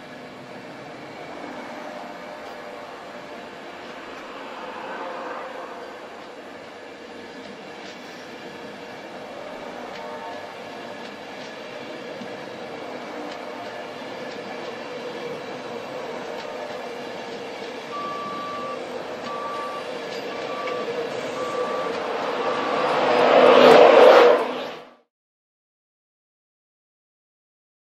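InterCity 225 train of Mk4 coaches moving slowly past along the platform, with a steady hum carrying a few faint steady tones. Late on, five short beeps sound about a second apart, then the sound swells to its loudest and cuts off suddenly.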